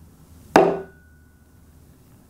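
A single sharp knock of a wooden Zen stick struck down on a hard surface about half a second in, followed by a brief thin ring. It is a Seon teaching strike, the sound meant to cut off thinking.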